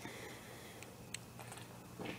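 Quiet room tone with a couple of faint clicks a little after a second in.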